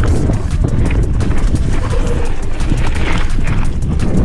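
Mountain bike riding fast down a dry, leaf-covered dirt trail: tyres crunching over leaves and dirt, with a rapid clatter of small knocks and rattles from the bike over rough ground, under a heavy rumble of wind on the microphone.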